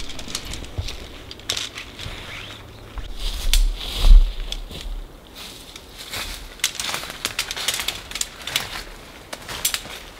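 Tent being pitched: nylon tent fabric rustling and shock-corded tent-pole sections clicking together, in many short clicks, with a low thud about four seconds in.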